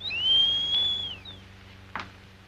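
A man's long admiring wolf whistle at a glamorous woman: the pitch rises, holds steady for about a second, then falls away.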